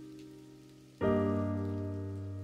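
Slow background piano music: a held chord fades away, and a new chord is struck about a second in and left to ring.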